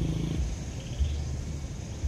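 A faint, low, steady rumble of outdoor background noise, a little stronger in the second half.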